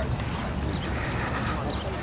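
Hoofbeats of a racehorse and its lead pony walking on a dirt track, heard as faint scattered clicks over steady outdoor noise.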